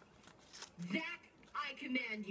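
Paper rustling as a folded slip is unfolded, with two short bits of a person's voice muttering about a second in and near the end.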